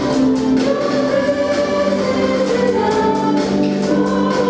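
Church choir singing a worship song, with a woman's voice leading on microphone, backed by keyboard and a drum kit keeping a steady beat.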